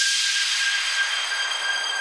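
House music breakdown with the kick drum and bass dropped out: a hiss of white noise that thins out near the end, under steady, high sustained synth tones.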